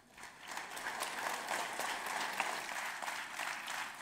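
An audience applauding, many hands clapping together. It rises from silence over the first half second and then holds steady.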